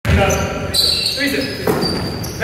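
Basketball being dribbled on a wooden sports-hall floor, with players' voices calling out over the bouncing.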